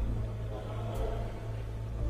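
A pause between speakers with only a steady low hum and a faint hiss in the background.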